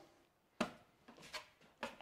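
Faint clicks and scrapes of a drywall taping knife scooping joint compound out of a plastic bucket and laying it on a drywall board. One sharper click comes a little over half a second in.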